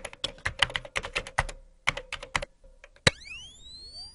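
Logo-intro sound effect: a rapid, irregular run of keyboard-typing clicks for about two and a half seconds, then one sharp hit a little after three seconds followed by several rising tones that ring on.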